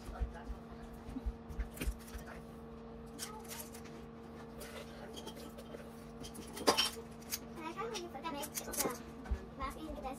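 A squeeze-handle batter scoop clicking and tapping against a metal muffin tin as chocolate muffin batter is dropped into paper liners, over a steady low hum. A sharp knock comes near seven seconds in, followed by children's voices in the background.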